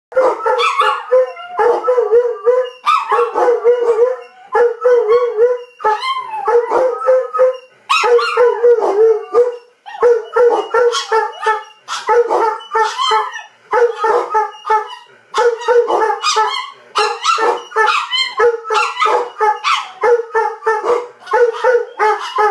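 Two dogs, a Doberman and a small black-and-tan dog, vocalizing at each other face to face in a long unbroken run of wavering, howl-like grumbles and yips. Each call lasts about half a second to a second, with barely a pause between them.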